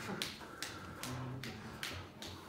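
Finger snaps on a steady beat, a little under two a second, setting the tempo for the band.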